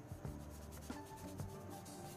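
Stiff paintbrush dabbing and scrubbing acrylic paint onto canvas in a series of short strokes, with soft background music.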